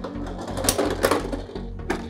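Beyblade spinning tops rattling on a clear plastic stadium floor, with a few sharp clicks as one wobbles and topples to a stop. Low background music runs underneath.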